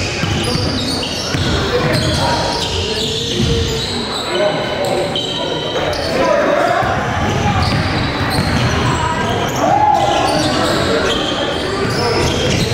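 Live basketball game sound in a gymnasium: a ball bouncing on the hardwood court and players' voices calling out, echoing around the hall.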